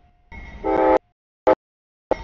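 Locomotive air horn on a CSX freight train sounding as the lead unit reaches a grade crossing. The horn is loudest from about half a second to a second in and cuts off suddenly, with a brief loud burst after it, the sound coming through in choppy fragments.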